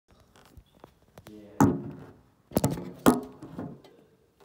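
Handling knocks and thuds as the camera is set in place: a few light clicks, then three loud knocks about one and a half, two and a half and three seconds in, each with a short ringing decay.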